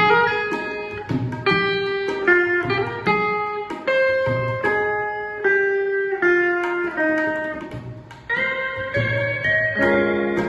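Steel guitar playing a Hindi film-song melody in single plucked notes that are held and slid between, over tabla and electric guitar accompaniment. The phrase thins out briefly about eight seconds in, then a new phrase begins.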